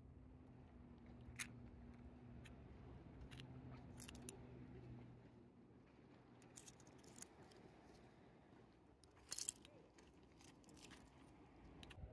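Seashells clicking lightly against one another as they are handled in the hand: a few scattered sharp clicks, the loudest about nine seconds in, over faint background noise.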